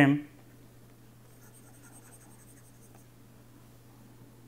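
Faint scratching of a stylus drawing lines on a pen tablet, over a steady low hum; the end of a spoken word opens it.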